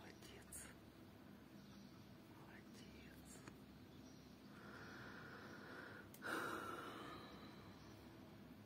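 Near silence with a person's faint whispering, loudest about six seconds in.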